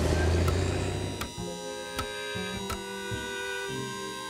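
Cartoon background music of held chords, punctuated by about three sharp percussive hits. A low rumbling whoosh opens it and fades out after about a second.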